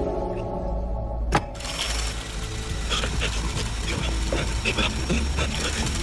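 A low, steady rumbling drone from the drama's soundtrack, with a single sharp click a little over a second in and faint scattered sounds over it afterwards.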